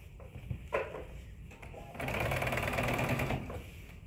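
Electric sewing machine running in one short burst of fast, even stitching, about a second and a half long, starting about two seconds in. A brief handling noise comes a little before it.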